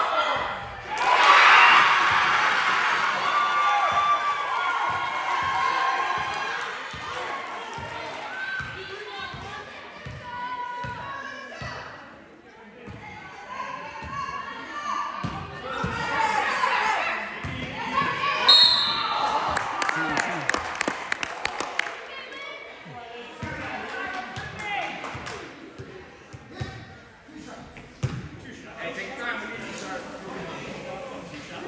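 Basketball game sounds echoing in a gym: a ball dribbling on the hardwood floor in a run of regular thumps, with players and spectators shouting, loudest about a second in. About halfway through, a short blast of the referee's whistle stops play for a foul.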